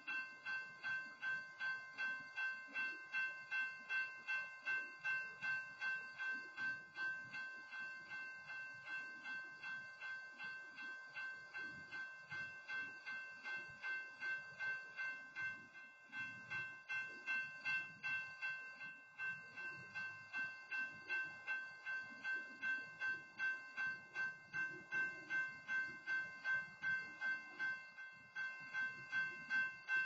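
Grade-crossing warning bell ringing at an even pace of about two and a half strikes a second while a freight train of covered hopper cars rolls past, its wheels giving a low rumble underneath.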